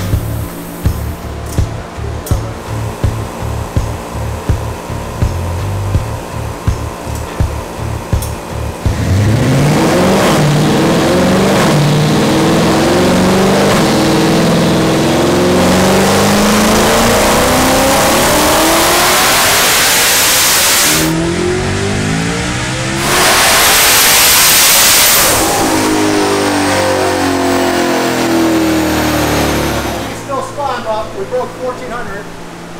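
Twin-turbo Shelby GT500's 5.2-litre V8 making a wide-open-throttle pull on a chassis dyno. The engine revs climb steadily for about twelve seconds, surge loudest near the top, then fall away as the car coasts down on the rollers.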